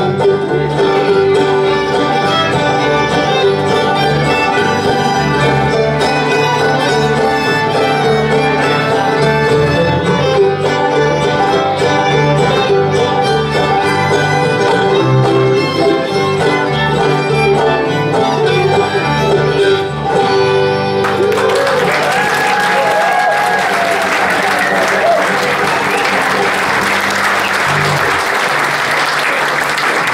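Live bluegrass-style string band (banjo, fiddle, mandolin, acoustic guitars and bass) playing an instrumental closing passage without singing. About twenty seconds in the music stops and audience applause follows.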